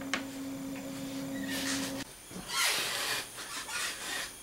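Workbench handling noise: a sharp click just after the start, then rustling as things are moved about, over a steady hum that cuts off abruptly about halfway through.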